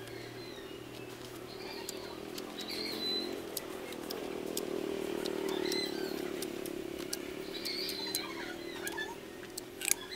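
A steady distant engine hum that swells in the middle and eases off again, with birds chirping and a few small clicks.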